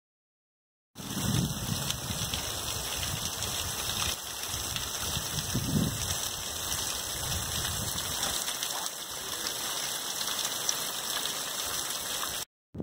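Water dripping and trickling steadily off a rock ledge, an even rain-like patter that starts about a second in, with a few low rumbles now and then.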